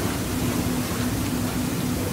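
Steady, even hiss with a faint low hum underneath: the background noise of the room and recording, with no distinct event.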